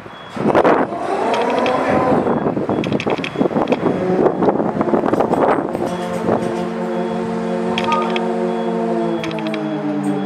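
Lifeboat davit winch hoisting the tender on its wire falls: clattering and knocking at first, then from about six seconds in a steady machine hum that drops slightly in pitch near the end.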